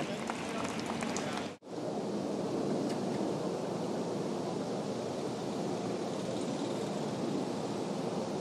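Steady outdoor background noise, an even wind-like hiss with no distinct events. It drops out sharply for an instant about one and a half seconds in.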